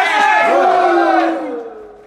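A group of footballers shouting a team cry together, many male voices held in a long shout that dies away about a second and a half in, echoing in the dressing room.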